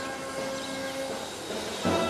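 Slow music of sustained held chords, with a new, louder chord coming in near the end.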